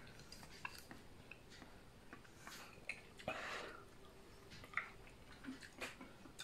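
Quiet crunches and light clicks from crispy roast turkey skin, with a couple of louder crunches about halfway through.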